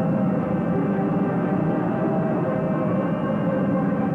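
A steady, sustained drone of many layered pitches, like the ringing chord of an ominous music bed, holding level without a break.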